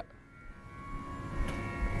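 Low steady room hum with a faint low rumble that grows louder toward the end, in a short gap between sung phrases.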